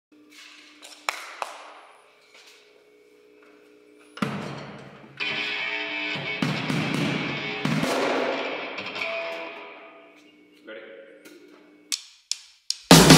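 Quiet intro of a heavy hardcore/sludge song: ringing electric guitar notes with a couple of sharp clicks, a pause, then about four seconds in a loud chord that rings out and slowly fades over several seconds, with a smaller swell near the end.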